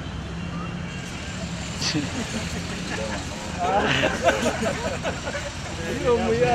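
Steady low engine hum, with people talking over it past the middle.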